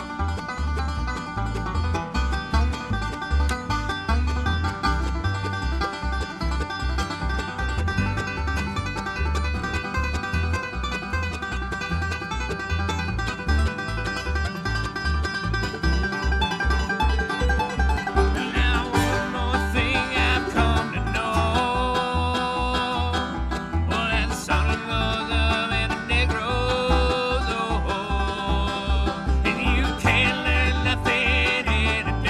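Bluegrass string band playing an instrumental break: banjo picking, acoustic guitars, mandolin and upright bass keeping a steady beat. A little past halfway a brighter, busier lead line comes in over the rhythm.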